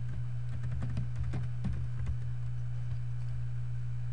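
Typing on a computer keyboard: a quick run of key clicks over the first two seconds or so, then it stops. A steady low electrical hum runs underneath.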